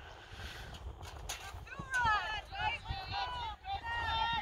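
Distant, high-pitched shouts and calls from players on the field, starting about halfway through, over a steady low rumble.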